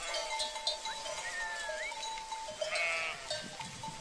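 A flock of sheep grazing, with one short sheep bleat near the end, over faint steady background music.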